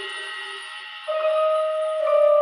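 Synthesizer sustaining soft held notes: a lower chord dies away early on, then about a second in a single higher note comes in and is held steadily.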